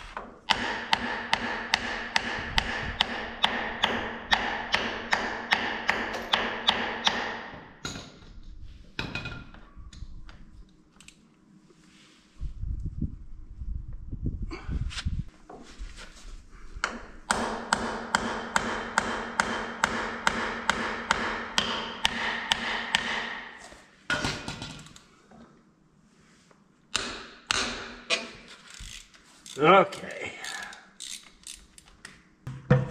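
Rapid, evenly spaced metallic clicking from a hand tool working the drain plug on a mini excavator's track final drive, in two runs of several seconds each with a ringing tone behind the clicks, and a few separate knocks near the end.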